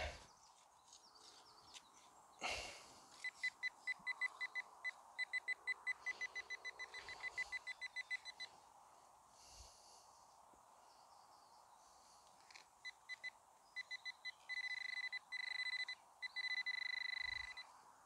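Handheld metal-detecting pinpointer beeping in fast, even pulses as it is worked over a dug soil plug, then giving longer, near-steady tones near the end as it closes on the metal target. A soft knock comes shortly before the beeping starts.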